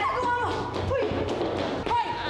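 Dramatic background music under women crying out and shouting as they scuffle, with a thump about halfway through.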